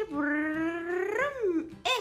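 A woman's voice singing a long, drawn-out wordless note that slowly rises, then sweeps up and down shortly before a brief sharp sound near the end.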